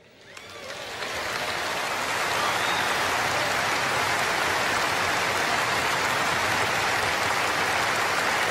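Large audience applauding, swelling over about the first second and then holding steady.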